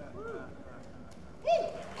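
A pause in a talk: low hall room tone with faint voices, then a short, high-pitched voice sound that rises and falls in pitch about one and a half seconds in.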